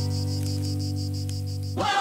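Background music: a held low chord under a fast, even high pulsing. Near the end the chord stops and a rising swell leads into a new section.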